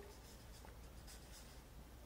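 Marker pen faintly scratching across a paper pad as words are written.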